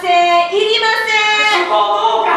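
A high-pitched voice singing a few drawn-out notes.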